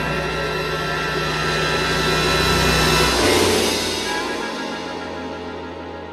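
Dense, sustained film score music that swells to its loudest about three seconds in, then loses its low drone and fades.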